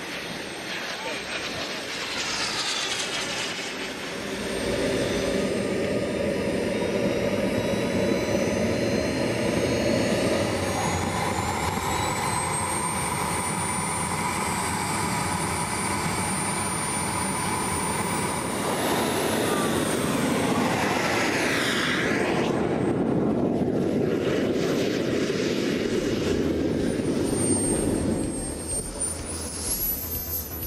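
KingTech K-170 model jet turbine running up on the ground, a high whine that climbs steadily in pitch for the first dozen seconds and then holds steady. The pitch shifts about twenty seconds in, drops, and climbs again near the end.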